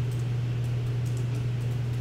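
A steady low hum with a faint hiss, and a few faint, light clicks of a computer keyboard as a short name is typed.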